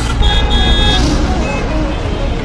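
Busy road traffic with vehicles running and car horns honking: a longer honk near the start and a short one about a second and a half in.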